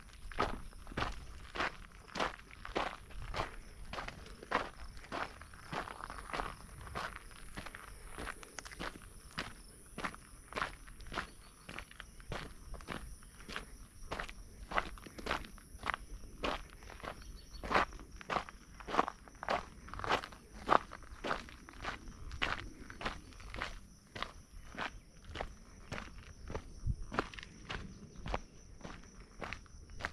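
A hiker's footsteps on a dry, gritty dirt trail, walking at a steady pace of about two steps a second.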